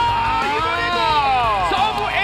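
A long, drawn-out shout, its pitch rising then falling over about two seconds, over background music, celebrating a serve ace.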